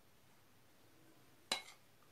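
A single clink of a metal spoon against a glass bowl of melted chocolate about one and a half seconds in, over faint room tone.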